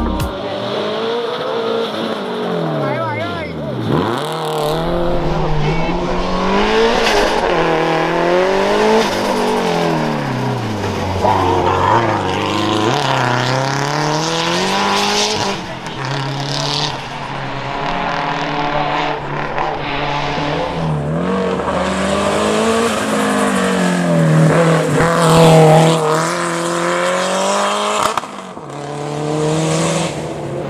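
Fiat Coupé Turbo racing through a slalom course, its engine revving up and dropping back again and again as it accelerates and brakes between corners.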